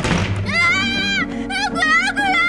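A single sudden thud at the start, then a high, wavering, sing-song voice mimicking a ghost, over a low, steady music drone.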